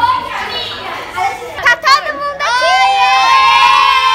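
A group of girls shouting excitedly, with two sharp knocks a little before the middle. Then comes one long, high-pitched scream held to the end.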